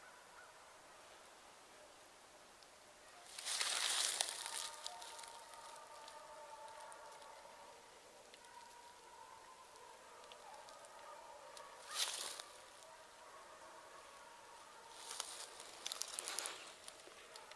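Faint, drawn-out baying of hunting dogs on a chase, the long calls running on and overlapping. Three short loud bursts of rustle or handling noise cut in: about three seconds in, about twelve seconds in, and near the end.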